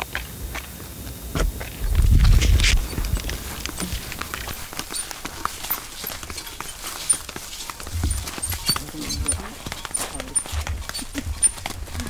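Indistinct voices with scattered light knocks and clicks as people handle and carry buckets and a can, and a loud low rumble about two seconds in.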